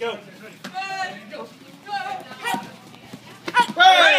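High-pitched voices giving short shouts during a taekwondo sparring exchange, several over the four seconds, the loudest and longest near the end. A quick run of sharp knocks comes just before that loudest shout.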